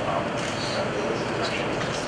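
Indistinct, distant talking over a steady hiss of room noise.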